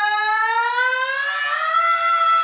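A man's voice holding one long, loud, unbroken yell that slowly rises in pitch.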